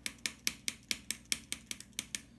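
Rapid, evenly spaced small clicks, about five a second, from a hand-held object at a desk.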